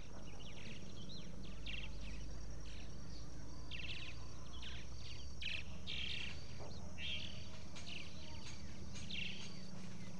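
Background nature ambience of many short, high bird chirps and trills, scattered irregularly, over a steady low hum.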